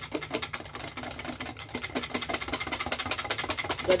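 Wire whisk beating batter in a plastic measuring jug: a fast, even run of clicks and light sloshing as the wires strike the jug's sides while the cocoa and red colouring are mixed into the rice-and-tapioca-flour coconut-milk batter.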